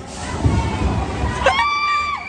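Low rumbling ride noise, then about one and a half seconds in a sudden high, held cry from a voice, falling in pitch near the end.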